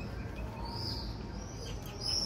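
A few faint, high bird chirps over a low, steady background rumble.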